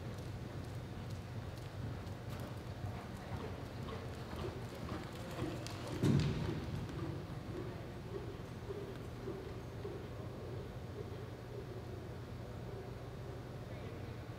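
Horse's hoofbeats on the soft dirt of an indoor arena floor, over a steady low hum. About six seconds in there is a single loud thump.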